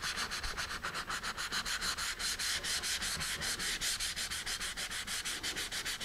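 Fine-grit sandpaper on a sanding pad rubbed quickly back and forth, about seven strokes a second, over a fin fillet of carpenter's wood filler and cured epoxy on a fiberglass rocket. This is the feathering of the fillet's edges to blend them smooth into the body tube.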